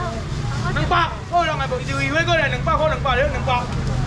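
People talking in short back-and-forth phrases over a steady low hum.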